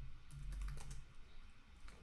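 Computer keyboard being typed on: a quick run of faint key clicks as a short phrase is typed out.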